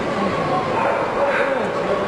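A dog barking over a steady murmur of voices.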